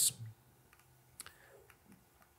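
A few faint, short clicks from a computer mouse and keys, about a second in and again near the end, as code is copied and the screen switches windows.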